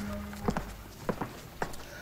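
Footsteps of hard-soled shoes on a hard floor: five or six short steps, about three a second, starting about half a second in.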